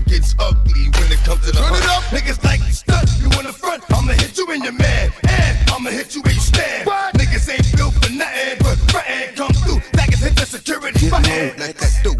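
A 2000s hip hop track playing loud in a DJ mix: rapping over a beat. The held bass gives way about two and a half seconds in to choppy, stop-start bass hits.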